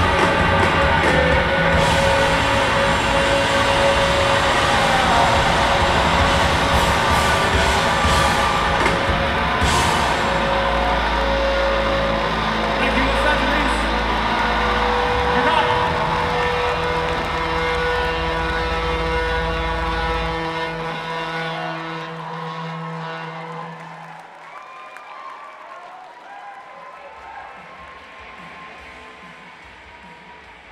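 Live rock band ending its last song in a wash of held guitar feedback and amplifier drone, with a deep low hum through the middle. The instruments are left ringing and the sound dies away over the last several seconds to a faint wavering ring.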